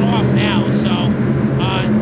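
Race car engines running in a steady low drone, with voices over it.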